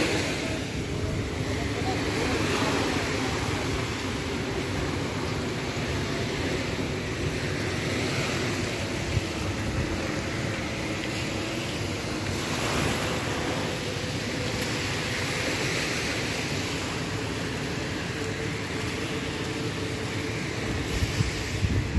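Steady wash of small waves on a sandy seashore, mixed with wind rumbling on the phone's microphone.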